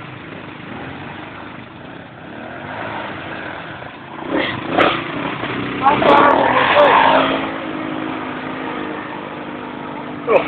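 ATV engine running under load as the quad climbs a rocky gully, a steady note throughout. Voices shout over it twice around the middle.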